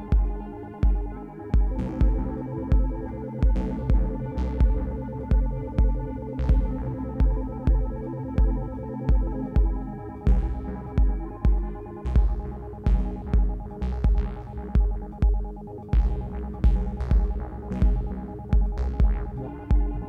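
Live improvised electronic music from a modular and analogue synthesizer rig. A heavy low pulse beats about three times every two seconds under droning synthesizer tones and sharp electronic clicks.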